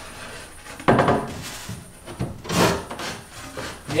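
A Paulownia wood panel being worked into a tight fit, rubbing and scraping against the neighbouring board in a few short, irregular pushes.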